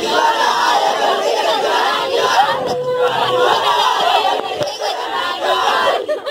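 A group of children and adults shouting and cheering together, many voices at once without a break.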